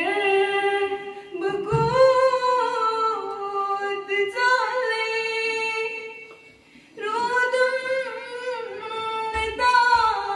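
Girls singing a Kashmiri naat unaccompanied, in long drawn-out phrases with gliding, held notes; the singing pauses briefly about six seconds in and then resumes.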